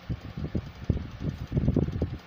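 Ceiling fan running overhead, its moving air giving irregular low rumbling gusts on the phone's microphone.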